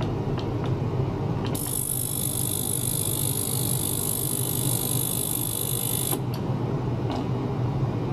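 Small ultrasonic cleaner bath switching on about one and a half seconds in with a steady high-pitched whine of several tones, which cuts off abruptly about six seconds in, over a steady low hum.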